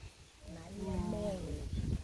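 A person's voice making one drawn-out vocal sound with a wavering pitch, starting about half a second in and stopping near the end, over a low rumble.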